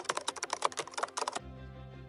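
A quick run of key clicks from typing on a smartphone's on-screen keyboard, stopping about one and a half seconds in.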